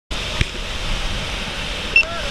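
Steady rush of wind and aircraft engine noise through the open jump door of a skydiving plane's cabin. A knock sounds about half a second in, and a short high beep near the end.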